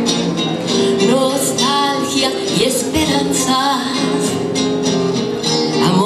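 A woman singing a Spanish-language song over two strummed nylon-string classical guitars.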